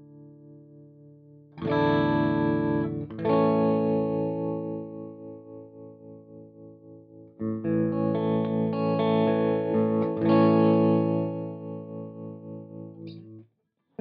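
Electric guitar (PRS SE Custom 24 into a Mesa/Boogie Mark V:25) played through a Spaceman Voyager I optical tremolo pedal: four ringing chords, each pulsing in volume a few times a second as it dies away. The last chord is cut off suddenly near the end.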